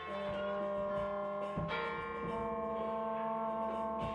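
Band rehearsing a slow passage: long, ringing, bell-like notes held and overlapping, with new notes coming in about a third of a second, a second and a half, and two seconds in.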